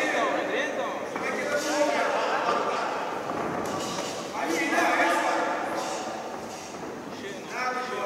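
Spectators shouting and calling out in a large indoor hall, several voices overlapping.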